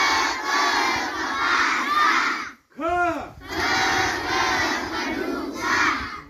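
A large group of schoolchildren chanting and shouting loudly together, typical of a recited Marathi letter drill. About two and a half seconds in they break off briefly, then one long shout rises and falls in pitch before the chanting resumes.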